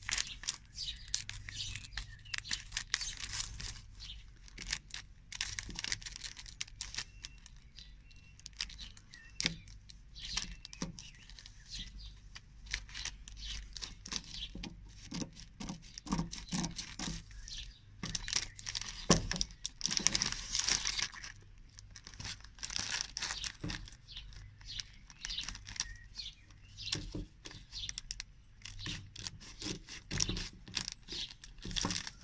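Scissors cutting and snipping at a thin polypropylene plastic bag, with the bag crinkling under the hands. The snips and rustles come in irregular runs, with one sharp louder click about 19 seconds in.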